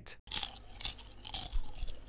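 Popcorn being munched: a quick run of irregular crunches.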